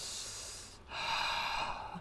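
A man breathing heavily and slowly into the microphone, two long breaths one after the other, in a mock heavy-breathing impression.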